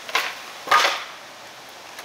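Skateboard coming down on asphalt during a hardflip attempt: a sharp knock near the start, then a louder clatter a little over half a second later as the board hits the street and stays upside down, not caught.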